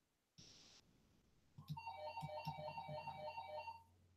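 A brief hiss, then a short electronic jingle of quick, high notes lasting about two seconds, like a ringtone or alert tone.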